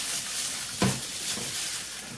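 Steady sizzling as of food frying, with a single knock about a second in as the baking tray is drawn off the oven rack.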